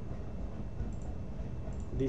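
Steady low background hum of room and microphone noise, with two faint computer-mouse clicks, about a second in and near the end.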